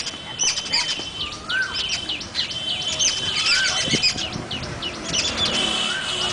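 Many birds chirping in a busy chorus of short, high chirps, with a short rising-and-falling whistle repeated about every two seconds and a thin steady high note that comes and goes.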